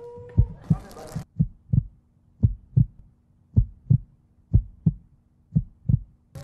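Heartbeat sound effect: paired low thumps repeating about once a second over a faint steady hum, a suspense cue while the dating-show result is held back. Voices run through the first second.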